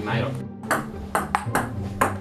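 Table tennis ball striking paddles and the table, several sharp clicks in quick succession, over background music.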